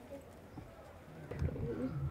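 A dove cooing softly, a low wavering call starting about a second and a half in after a quiet stretch.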